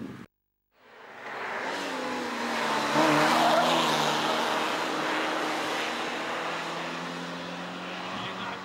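Fiat Cinquecento hillclimb car's engine running hard at high revs as it drives through a corner, fading in after a brief dropout near the start, loudest about three seconds in, then easing off slowly.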